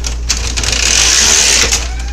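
A burst of hissing noise lasting about a second, over a steady low hum.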